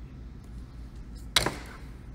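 A single sharp knock of a hard object on a hard surface, about one and a half seconds in, over a low steady hum.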